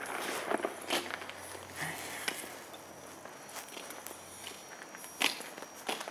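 Footsteps on an asphalt road as a person walks two small dogs on leashes: irregular light scuffs and ticks, with a sharper click about five seconds in.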